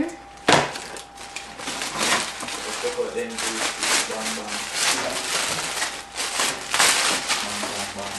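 Clear plastic bag crinkling and rustling in irregular bursts as a long artificial pine garland is worked out of it, with one sharp snap of the plastic about half a second in.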